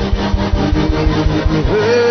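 Live church worship music: a fast, even drum beat under held keyboard chords, with a man shouting 'hey' over it. Near the end the beat drops out and a note rises and is held.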